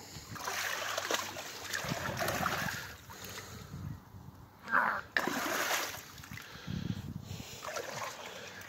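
Creek water and mud splashing and squelching in irregular spells as hands dig at a foot stuck in the mud.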